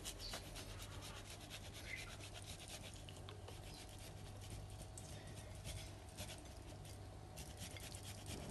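Parmesan cheese being grated on a flat handheld rasp grater: quick, repeated faint scraping strokes.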